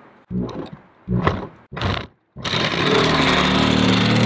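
Reciprocating saw cutting through painted plywood. There are three short bursts of the saw in the first two seconds. After a brief pause it runs steadily from about two and a half seconds in as the blade cuts through.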